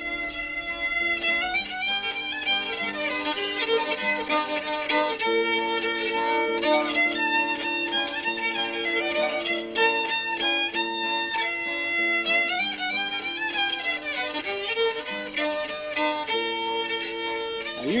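Fiddle playing an old-time tune, a run of bowed notes that goes on without a break.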